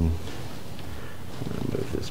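A brief low steady hum cuts off just after the start. Near the end come faint irregular clicks and rustling of hands handling the motor cables and mounting hardware on a wireless lens-control receiver.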